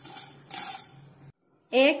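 Wooden spatula stirring dry whole spices in a nonstick pan as they are dry-roasted, a soft scraping and shuffling that swells twice and stops abruptly about a second and a half in.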